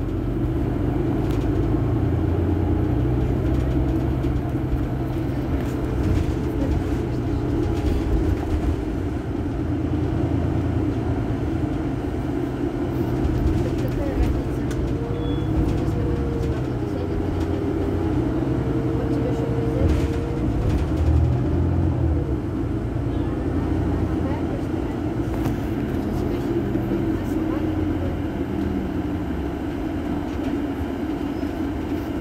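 Iveco Crossway LE city bus's diesel engine idling steadily while the bus stands still, with people's voices around it.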